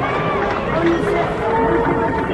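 Football supporters chanting together in the stands, a dense mass of many voices with some notes held.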